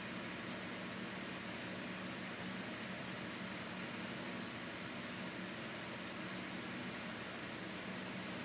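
Steady cabin noise of a car driving along a sealed road: an even hiss of tyres and air with a faint low hum underneath.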